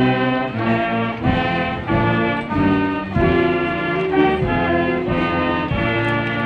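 A school brass band playing a tune of held chords that change about every half second, with brass and saxophone.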